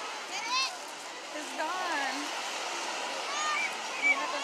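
Busy beach ambience: a steady rushing noise with short snatches of voices over it.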